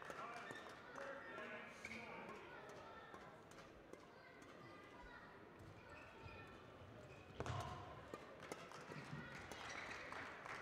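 Quiet sports-hall ambience with faint distant voices, then sharp badminton racket hits on a shuttlecock from about seven seconds in as a rally starts.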